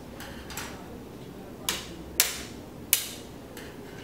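Several sharp plastic clicks and taps, the loudest about two and three seconds in, as snap-on plastic side brackets are unclipped from a metal 3.5-inch hard-drive tray and set down on a tabletop.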